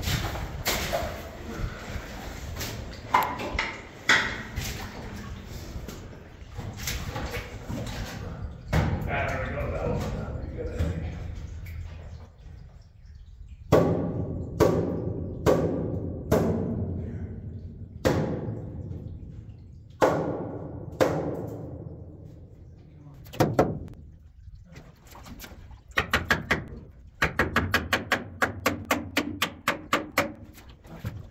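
Hammer nailing wooden timber boards, a series of heavy separate blows, each ringing briefly, then a quick run of lighter taps near the end. Softer knocks and clatter fill the first part.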